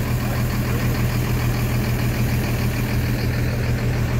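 Large vehicle engine idling steadily, a low even hum with no change in pitch.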